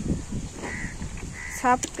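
A bird calling twice, two short even calls, then a voice beginning near the end.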